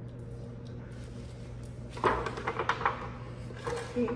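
Kitchen handling noises: a mixing bowl being tipped and knocked against a foil baking pan, giving a quick run of short knocks and scrapes about halfway through and a couple more near the end, over a steady low hum.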